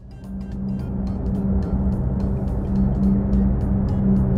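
Cartoon propeller-plane engine sound effect: a steady drone that starts suddenly and grows louder as the plane flies in, over light background music with a ticking beat.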